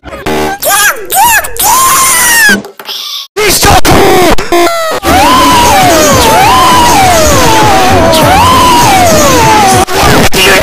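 Overdriven, clipped meme-edit audio: chopped snippets of voice and music cut together in the first half, then a pitched, voice-like wail sliding up and down about once a second for the last five seconds.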